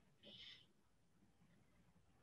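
Near silence, broken once by a brief faint high hiss about a quarter of a second in.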